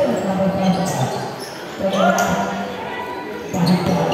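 Basketball bouncing on a hard court during play, several sharp bounces, with players and onlookers calling out over it.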